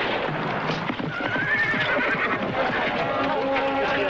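Horses galloping in a dense battle-scene sound mix, with a wavering horse neigh about a second in.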